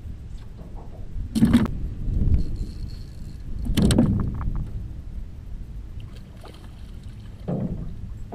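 Two loud knocks against a small boat's hull, about a second and a half in and again near the four-second mark, with quieter handling noises later, over a steady low rumble of wind on the microphone.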